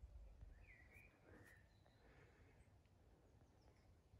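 Near silence of a quiet woodland with faint birdsong: a few short chirps between about half a second and a second and a half in, then only faint outdoor background.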